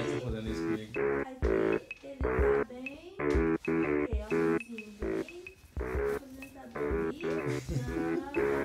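Upbeat music in a stop-start rhythm: short, punchy chords cut off by brief gaps, each with a deep kick-drum thump, with an occasional gliding pitch between them.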